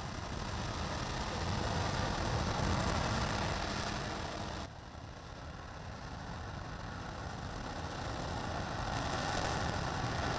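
RS-25 liquid-fuelled rocket engine firing on a ground test stand: a steady, rushing noise with a deep rumble underneath. It drops abruptly in level about halfway through, then swells again.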